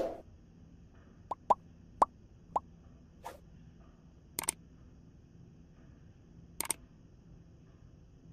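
Sound effects for an animated subscribe-button overlay: four short pops about half a second apart, each rising quickly in pitch, then a few sharp clicks, two of them coming in quick pairs.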